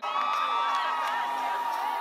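Large concert crowd cheering and whooping, many voices overlapping, with a few held high cries; it cuts in abruptly at the start.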